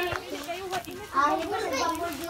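High-pitched voices talking and calling out, the words unclear.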